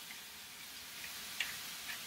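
Faint steady sizzle of broccoli sautéing in a hot pan with a little water, with a few light ticks in the second half.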